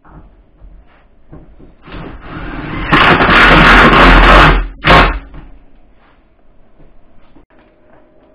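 Cordless drill/driver running a terminal fastener on a solar inverter: it builds over about a second, runs loud for about a second and a half, stops, then gives one short second burst. Light clicks and handling knocks around it.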